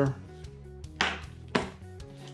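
Two short knocks, about a second in and again half a second later: a small plastic battery-and-alternator tester and its clip leads being set down on a wooden workbench.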